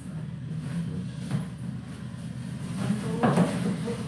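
Metal-framed lottery-ball case being shut and handled: a sharp click about a second in, then a few knocks and clatter near the end, over a steady low hum.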